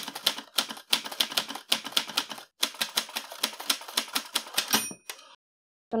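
Typewriter sound effect: a rapid run of key strikes, about five or six a second, with a brief pause midway, ending with a short bell-like ring near the end.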